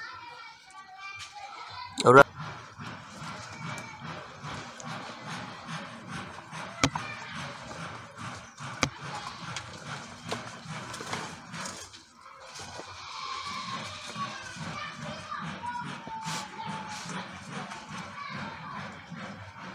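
Indistinct background voices and outdoor ambience, with a short loud sound about two seconds in and a couple of sharp clicks.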